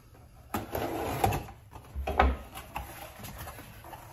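Unpacking a cardboard shipping box on a workbench: rustling and scraping of packaging from about half a second in, then a dull thump about two seconds in and lighter handling clicks.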